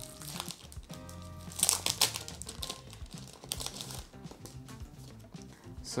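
Paper leaflets and a printed card crinkling and rustling as they are handled and unfolded, loudest about one and a half to two seconds in, over background music.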